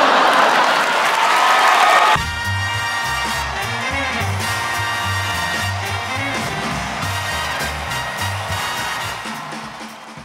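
Audience applauding and cheering, cut off about two seconds in by music with a steady bass beat that fades out near the end.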